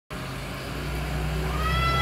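A Ford Cargo garbage truck's diesel engine running with a steady low rumble as the truck rolls slowly over cobblestones toward the listener. A high steady whine comes in about one and a half seconds in.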